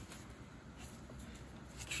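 Faint rustling and handling noise over a low background hiss.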